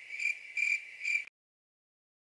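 Cricket chirping sound effect: a high, even chirp repeating about four times a second, cut off abruptly a little over a second in.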